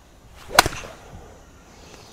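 A golf iron swung at full speed: a brief swish, then one sharp crack as the clubface strikes the ball off the mat about half a second in.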